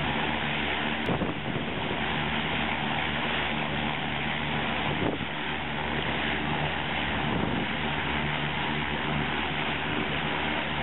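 Propeller engine of a high-wing skydiving aircraft running steadily on the ground, a constant low drone under a heavy hiss of wind and propeller wash on the microphone. A brief click about a second in.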